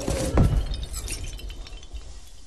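Animation sound effect of a large star bursting into many small stars: a heavy impact about half a second in, then a glassy shattering and tinkling of scattered small pieces that fades away.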